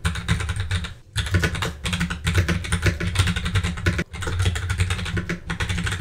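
Fast typing on a computer keyboard: a quick run of keystrokes, broken by short pauses about one second in and about four seconds in.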